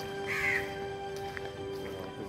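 A single short bird call about a third of a second in, over background music of long held notes.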